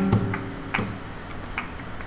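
The last notes of a flamenco-style acoustic guitar ring out and fade by about a second in. Scattered sharp percussive clicks continue through the fade.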